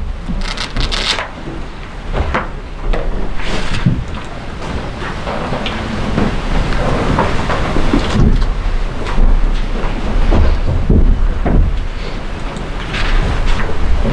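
A hardcover book being opened and its paper pages leafed through and handled close to a microphone: an irregular run of rustles and soft knocks.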